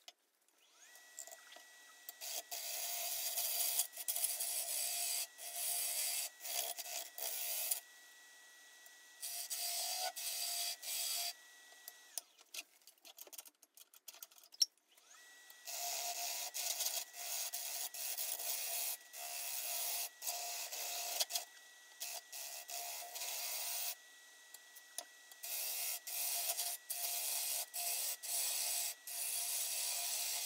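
A bowl gouge cutting the inside of a spinning bowl of green, wet black walnut on a wood lathe: a hissing shearing sound in repeated passes of one to three seconds, with short pauses between them and a longer break near the middle.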